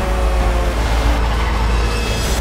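Tanker semi-truck speeding past, a loud, steady deep rumble under a dense wash of noise.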